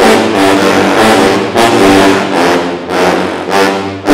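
A sousaphone ensemble playing loud brass chords in rhythmic, accented phrases, some notes short and some held.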